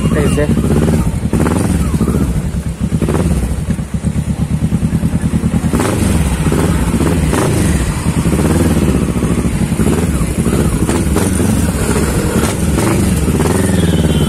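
Kawasaki Ninja 650R's parallel-twin engine running loud through its exhaust, a rapid, even pulse as the bike rides slowly in street traffic.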